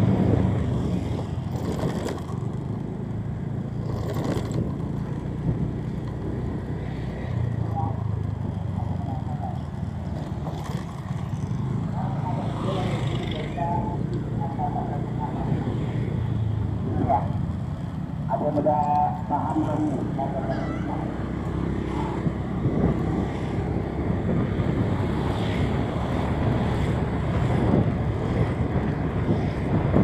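Steady low rumble of engine and tyre noise from a vehicle driving along a road, with motorcycles passing close by. A few short pitched sounds come through around the middle.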